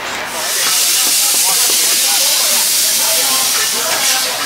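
Compressed air hissing steadily for about three and a half seconds, coming in just after the start.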